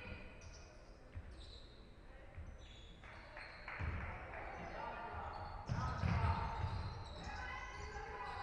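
A basketball bouncing on a wooden sports-hall floor during play, as irregular dull thumps, with voices from around the court.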